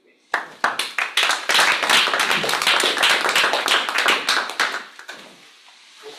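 Audience applauding: many hands clapping, starting abruptly a fraction of a second in and fading out about five seconds in.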